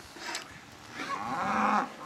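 A Simmental-Angus feeder calf mooing once, a single call of under a second about halfway through.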